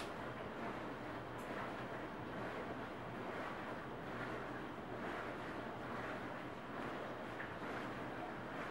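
Steady background hiss with a faint low hum: room tone, with no distinct events.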